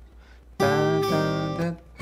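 Steel-string acoustic guitar picked fingerstyle. After a short pause, a chord sounds about half a second in and rings, a few more notes follow, and the playing stops shortly before the end.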